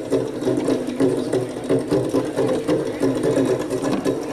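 Goblet-shaped hand drum played with the hands in a fast, steady run of strokes.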